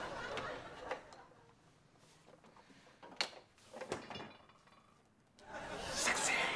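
Audience laughter dies away in the first second, then a quiet room with a few short knocks around the middle. The laughter rises again just before the end.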